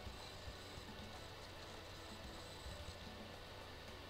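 Quiet room tone picked up by the recording microphone: a steady low hum under faint hiss, with a few faint clicks.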